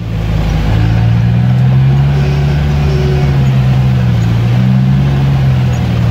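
UAZ off-roader's engine running steadily under load as it drives through mud, heard from inside the cab: a low drone that rises a little about a second in and then holds.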